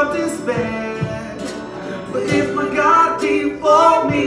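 Live worship song: a man and a woman singing together into microphones, accompanied by a strummed acoustic guitar.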